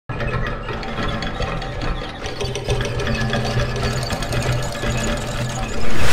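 Intro music with a rapid mechanical clatter running through it over a steady low drone. Near the end it jumps into a loud whoosh as the logo appears.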